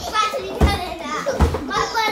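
A young boy's excited, shouted rap-like chanting, with a steady low thump about every three-quarters of a second underneath.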